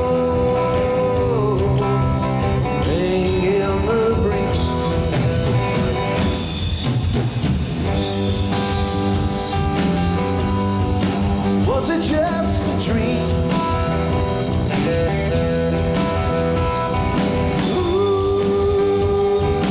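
Live blues-rock band playing an instrumental passage: electric guitar lead with long held notes bent up and down, over bass guitar and drum kit.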